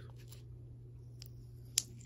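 Small clicks from fingers picking at the tape on a coin holder: a faint one, then a sharper one near the end, over a low steady hum.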